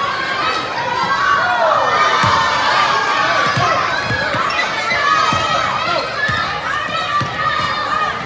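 Many children's voices shouting and calling out over each other in a large echoing gym, with a basketball bouncing on the hardwood court in irregular thuds.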